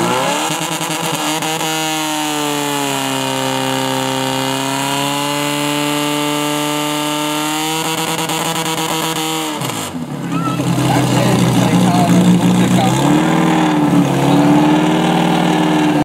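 Portable fire pump's petrol engine revving up hard and running at high speed while it pumps water to the nozzles, its pitch sagging slightly under load. About ten seconds in it drops off suddenly as it is throttled back, then runs on at lower revs with a brief rise near the end.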